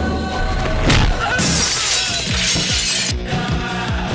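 Action film background score with a sharp hit about a second in, followed by a long crashing, shattering sound effect lasting about a second and a half.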